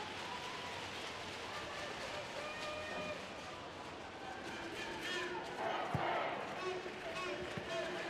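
Football stadium crowd ambience with faint shouts and calls from the stands and pitch, and a sharp thud about six seconds in, likely a ball being kicked.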